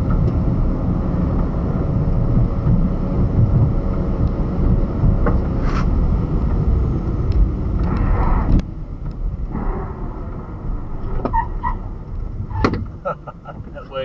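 Car cabin noise on a wet road, tyres and engine running with a steady low rumble, which drops away about eight and a half seconds in as the car slows. A few light clicks come near the end.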